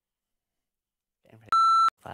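A single loud electronic bleep, one steady high tone lasting under half a second that cuts in and out sharply, dropped over a spoken word near the end: a censor bleep. A brief murmur of speech comes just before it.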